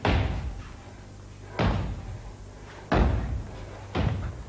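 Three heavy, echoing thuds: one at the start, one about a second and a half in, and one near three seconds, each dying away over a fraction of a second.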